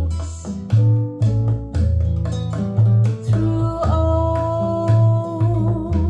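Harbeth 30.2 XD loudspeakers playing a recorded song: plucked acoustic guitar over deep plucked bass notes, with a long held melody note from about four seconds in.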